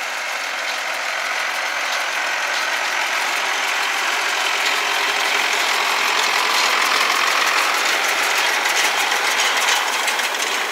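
Turbocharged diesel engine of a Zetor Crystal 10145 tractor running steadily while it pulls a working New Holland 644 round baler, its mechanism clattering along with it. The sound grows louder as the rig passes close by.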